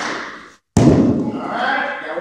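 A loud thump about three-quarters of a second in, followed by children's voices.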